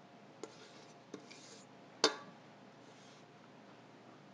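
Spatula scraping thick nut filling out of a stainless steel mixing bowl, with two light clicks and then one sharp metallic knock with a short ring about two seconds in.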